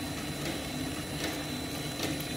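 White tapioca pearl making machine running with a steady hum, with water streaming down from it as the pearls drop.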